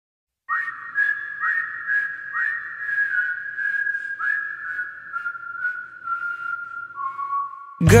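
A whistled melody: several upward swooping notes, then a slow line stepping down in pitch, over faint ticking percussion. A loud pop song with singing starts suddenly right at the end.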